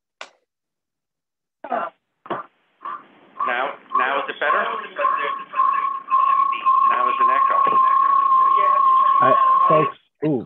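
Audio feedback on a video-conference line: a single steady whistling tone swells in over a few seconds and holds loud over muddled, echoing speech, then cuts off sharply near the end. The cause is two meeting rooms' microphones and speakers picking each other up.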